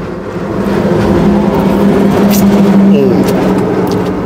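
Steady vehicle engine drone with a low, even hum, growing a little louder after the first half second.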